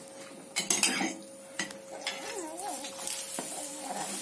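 A metal spoon clinking and scraping against a flat chapati pan as a chapati is turned, with a few sharp clicks about a second in, over faint sizzling of the cooking chapati.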